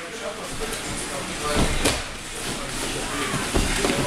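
Thuds of bodies and feet on vinyl-covered gym mats during takedown drills, a few dull thumps with one sharper slap just before two seconds in, over the voices of people in the hall.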